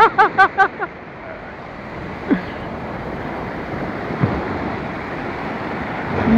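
Surf washing and breaking along the beach, a steady rush mixed with wind on the microphone. A man's laughter runs on through the first second and stops.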